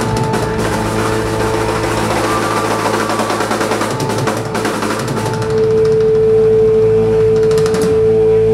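Live rock band playing: busy drum-kit fills and cymbals under a keyboard, then about halfway through the cymbals drop out and a loud, steady held keyboard note takes over.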